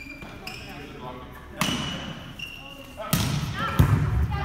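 A volleyball being struck in a gym: two sharp slaps of the ball, about three seconds in and again just before the end, over players' voices echoing in the hall.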